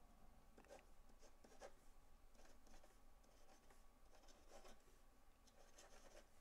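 Faint scratching of a pen writing on paper in short, irregular strokes.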